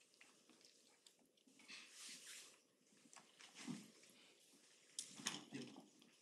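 Near silence: quiet meeting-room tone with a few faint, short soft noises and a faint voice near the end.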